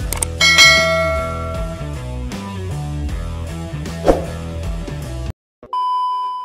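Intro music with a bass line. A click and a ringing bell-like ding sound near the start, typical of a subscribe-button animation. The music cuts off about five seconds in, and a short steady test-tone beep, the kind played with TV colour bars, follows.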